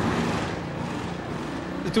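Steady outdoor ambience at a motor-racing circuit: an even rush of noise with a faint low hum beneath, fading slightly.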